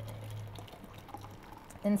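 Cashew nut milk being poured from a bowl into a glass mason jar: a faint, quiet trickle of liquid. A low steady hum runs underneath and fades out about one and a half seconds in.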